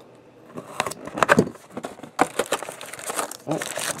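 A box cutter slitting open a sealed trading-card box, followed by the plastic wrap crinkling as it is pulled away, with a few sharp clicks and then a stretch of crackly rustling.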